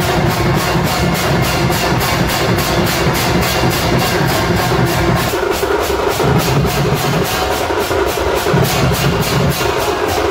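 Procession drum band playing live: drums beaten with cymbals crashing in a steady rhythm of about four strokes a second, over a low drone that drops out briefly a few times in the second half.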